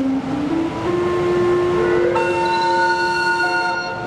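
Steam calliope on the steamboat Natchez playing held notes: a low note steps up in the first second, then more notes join about two seconds in and sound together as a chord.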